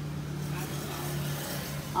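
A steady low engine hum from a vehicle on the road close by, which drops away about three-quarters of the way through.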